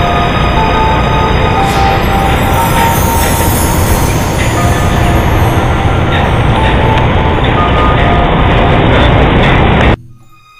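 Loud, steady outdoor city noise of traffic, picked up by a handheld camera's microphone, with a faint melody of short notes underneath. It cuts off suddenly at the end.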